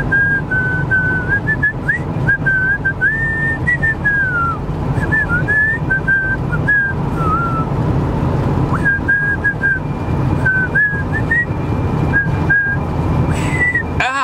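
A man whistling a tune in short notes and slides, straining for a hard high note, with a pause a little past halfway. The car's steady road rumble runs underneath.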